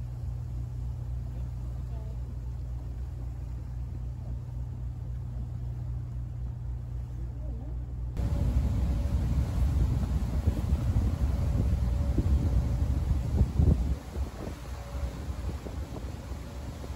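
Engine drone of the Garinko-go III icebreaker sightseeing boat under way, a steady low hum. About halfway through it turns louder and rougher, a low rumble with a few knocks a little before the end.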